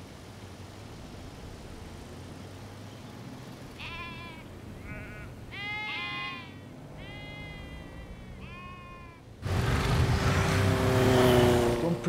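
Sheep bleating about five times, each call wavering in pitch, over a low background rumble. About two and a half seconds before the end, a loud motorcycle engine cuts in suddenly and drowns everything.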